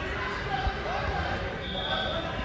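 Indistinct voices talking and calling in a large, echoing sports hall, with a dull thud about two-thirds of a second in and a short, steady high beep near the end.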